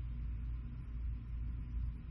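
Steady low background hum with a faint even hiss, and no distinct events: room tone in a pause between speech.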